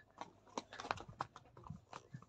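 Hooves knocking on a stony trail, faint and irregular, a few knocks a second.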